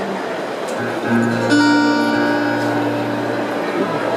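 Music begins about a second in: an acoustic guitar chord with sustained low notes under it, held and ringing rather than a strummed rhythm.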